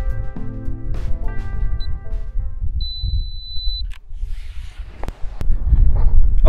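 Guitar background music dies away in the first couple of seconds. A camera then gives a short electronic beep and a single steady high beep lasting about a second. A few sharp clicks follow over a low rumble.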